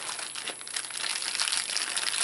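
Packaged first-aid supplies being stuffed into a pocket of a nylon first aid kit bag, crinkling and rustling irregularly throughout.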